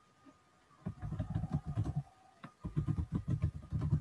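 Computer keyboard typing in two quick runs of keystrokes, with a short pause about two seconds in.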